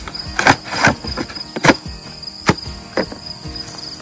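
Packaging being handled and torn open as the scrape vine is pulled out, a handful of sharp crinkles and snaps. Insects trill steadily behind.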